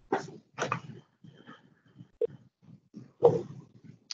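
A dog barking, heard through an attendee's open microphone on a video call: three short barks, one at the start, one about half a second in and one a little after three seconds, with fainter sounds between.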